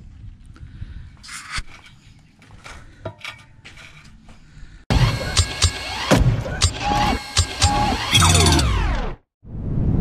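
Faint taps and scrapes of brick and mortar being laid on a brick pier. About halfway through, a loud logo sting cuts in suddenly: music with sweeping, falling tones and sharp hits, which stops about a second before the end.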